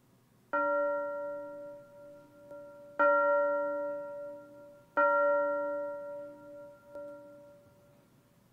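The same bell-like note struck three times, about two and a half seconds and then two seconds apart, each ringing out and fading over about two seconds. Two faint taps fall between the strikes.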